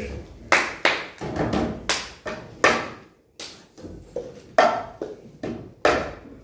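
Cup-rhythm pattern: hand claps and a paper cup being slapped, lifted and struck down on a wooden desk, giving a run of sharp hits at roughly two a second with a short pause about halfway through.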